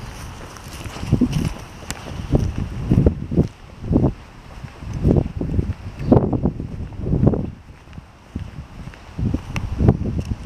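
Footsteps on a concrete sidewalk, heard as low thuds about once a second, mixed with handling and wind noise on a hand-held camera's microphone.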